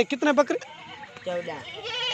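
Rajanpuri Gulabi goats bleating: a few short, wavering calls from the herd.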